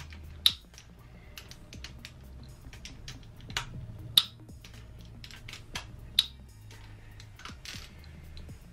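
Hand ratchet clicking on socket as the camshaft bearing cap bolts of a Z20LEH twin-cam cylinder head are backed off a quarter turn at a time, with three louder sharp clicks about two seconds apart. The bolts are eased off evenly because the cam lobes are still pushing on the valve springs.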